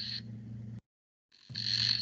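Remote participant's video-call audio breaking up: a steady low hum with a high hiss, garbled and unintelligible. It cuts out to dead silence for about half a second midway, then comes back.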